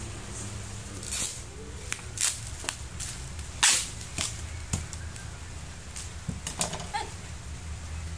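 Bubble wrap crinkling and crackling in short sharp bursts as it is wrapped around a plastic jar, the loudest crackle a little past the middle.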